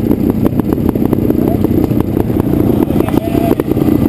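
Trial motorcycle engine idling close by, a steady low running dense with small uneven ticks.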